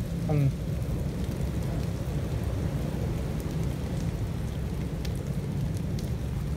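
Steady rain falling on wet ground and puddles, with a constant low rumble underneath.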